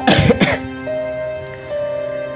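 A person clears their throat with two short coughs in the first half second, over soft background music of long held notes.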